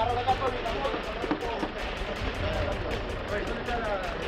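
Indistinct voices talking in short snatches over a low steady rumble.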